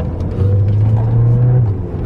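Car engine heard from inside the cabin, pulling harder about half a second in with a louder drone for about a second, then easing off. The driver is putting it under throttle to test whether a different drive mode changes how it sounds.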